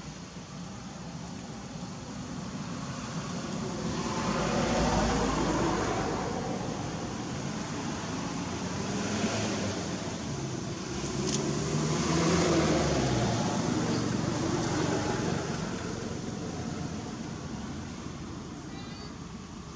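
Motor vehicle engines passing: the engine noise swells and fades twice, loudest about five seconds in and again around twelve seconds, with the engine pitch bending as it goes by.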